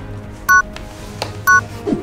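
Two short electronic beeps, each of two tones sounding together, about a second apart: a countdown timer ticking off seconds. Steady background music runs underneath.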